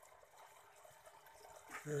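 Faint steady trickle of water from a running aquarium filter.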